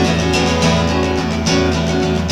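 Steel-string acoustic guitar strummed in a steady rhythm, its chords ringing between sharp strokes.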